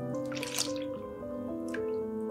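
Water splashing and dripping as grated potato shreds are lifted out of a bowl of water, once about half a second in and briefly near the end, over background music with a melody of held notes.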